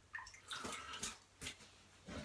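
Faint, scattered wet clicks and rustles close to the microphone, a few short sounds spread across two seconds.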